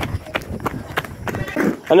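Hurried footsteps of sneakers on a paved road, about three steps a second; a voice starts speaking at the very end.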